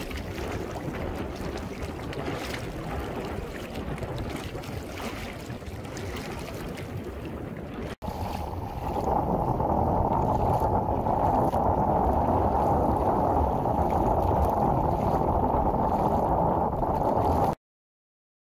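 Wind buffeting the microphone over open shallow seawater, with water sloshing and splashing. After a cut about 8 s in, the wind rumble gets louder and deeper, then cuts off suddenly near the end.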